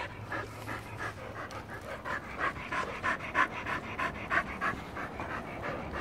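Dog panting hard, a steady rhythm of about three breaths a second.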